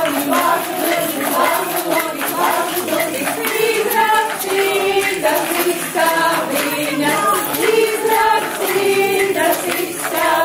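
A group of voices singing a Latvian folk dance song together in unison, with a light steady beat under it.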